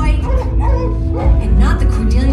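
Dog barks, yips and whimpers in quick succession over a low droning music bed.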